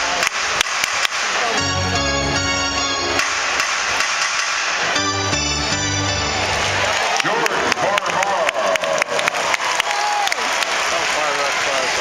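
Basketball arena sound: short bursts of music from the arena's PA over a crowd's constant chatter and shouts, with sharp knocks scattered throughout. About halfway in, the music stops and the crowd's voices fill the second half.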